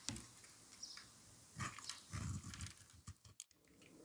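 Soft, scattered scraping of a utility-knife blade and gloved hands on a bar of soap, with a couple of light shaving strokes in the middle and a brief near-silent pause near the end.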